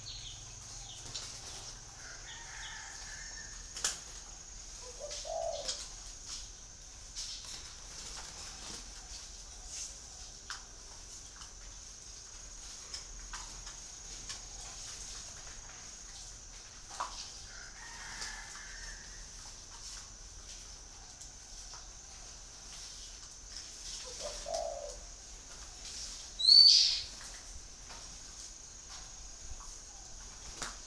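Caged spotted dove cooing softly, two short low calls far apart, over a steady high hiss. A single sharp, high chirp, the loudest sound, comes near the end.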